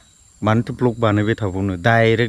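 A man talking, after a short pause at the start, with a faint steady high insect drone of crickets beneath.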